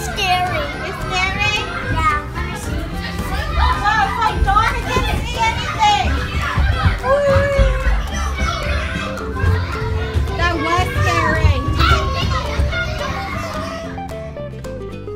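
Children shouting and squealing as they scramble through a play structure's tubes, with low thumps and rumbling from their movement, over background music.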